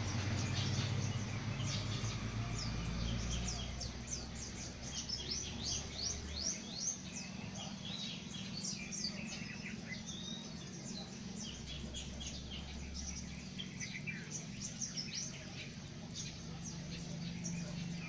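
Small birds chirping: many quick, high chirps that sweep downward, crowded together through most of the stretch and thinning out near the end.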